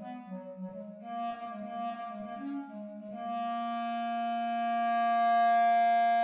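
Software-rendered bass clarinet, played back from Finale notation software, playing an unaccompanied line: a quick string of short low notes, then one long held note from about three seconds in that swells slightly.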